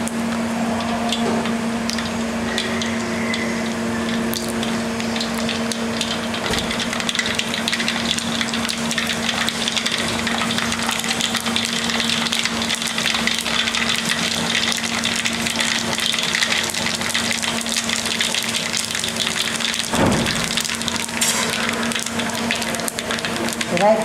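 Ghee with mustard and cumin seeds sizzling steadily in a hot hammered metal kadai, over a steady low hum. A short knock comes near the end.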